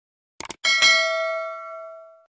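End-screen sound effect: a quick pair of clicks, then a bright bell-like ding, struck twice in quick succession, that rings and fades over about a second and a half, accompanying the notification-bell icon's animation.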